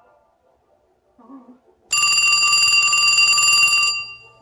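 Telephone ringing: a single ring about two seconds long. It starts about halfway through, after near silence, and stops just before the end.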